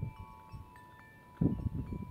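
Outdoor tubular metal wind chimes ringing, several tubes struck in turn so that separate clear tones start one after another and ring on. A low rumble rises about one and a half seconds in.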